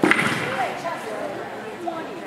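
Agility seesaw (teeter) plank banging down onto the floor as the dog rides it down, one loud knock right at the start with a short echo, followed by people talking in the background.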